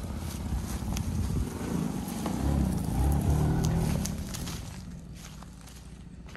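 Lexus RX300's 3.0-litre V6 pulling away, getting louder toward the middle and then fading as the SUV drives off. A few light crackles are heard over the engine.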